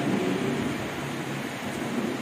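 Steady, even background noise with no distinct tone or event in it, fading slightly.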